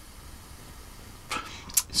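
A faint, even hiss of air drawn through a rebuildable dripping atomizer's restricted airflow on a mechanical mod. Near the end there is a short, breathy rush of air.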